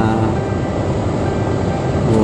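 Steady low hum and rumble of a vehicle's running engine and air conditioning, heard inside the cabin of a stationary SUV.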